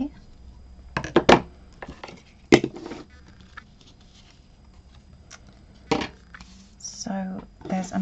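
Scissors snipping satin ribbon and craft tools handled on a desk. There is a quick double click about a second in, single sharp knocks at about two and a half and six seconds, and a little murmured voice near the end.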